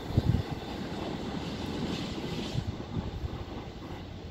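Freight train of wagons running away down the line, its rumble slowly fading into the distance, with a few low thumps just after the start.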